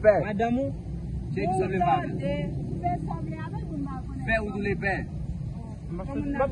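People talking in short stretches, over a steady low rumble.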